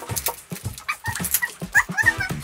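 Crinkling and tearing of the plastic wrap on an L.O.L. Surprise doll ball as it is peeled open by hand: a run of quick crackles, with a couple of short high squeaks.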